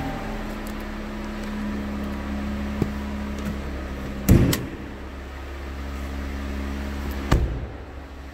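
Jeep Cherokee's 3.2-liter Pentastar V6 idling steadily. A loud thump of a car door shutting comes about four seconds in, and a sharper knock near the end.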